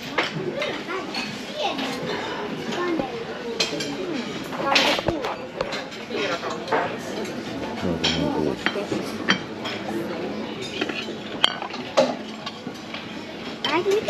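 Busy buffet restaurant: background chatter with clinks of plates, cutlery and glassware, including two sharp clinks near the end as a small glass cup is set on a ceramic plate.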